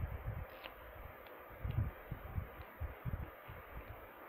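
Faint handling of a mascara wand and its tube: a few light clicks and soft low bumps over steady room hiss.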